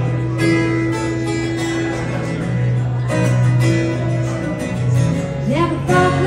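Acoustic guitar strummed live as the intro to a country song, with singing starting near the end.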